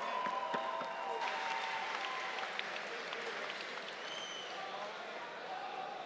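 Arena crowd applauding, a dense patter of claps with scattered voices, easing off toward the end.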